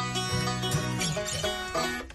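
Banjo strings plucked and left ringing as the banjo is tuned, several notes held at once.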